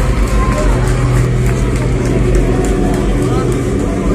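Loud live hardcore punk intro played by the band on stage, with crowd voices shouting over it and a steady low note held from about a second in.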